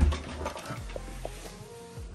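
A heavy thump at the start as a portable PA loudspeaker cabinet is grabbed and tipped up by its handle, followed by low handling rumble under faint music with held notes.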